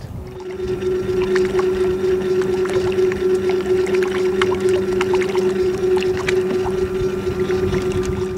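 Torqeedo Ultralight 403 electric kayak motor running at a steady speed: a constant, even hum-whine with scattered light clicks. It stops shortly before the end.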